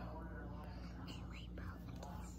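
A young child whispering into someone's ear, soft and breathy.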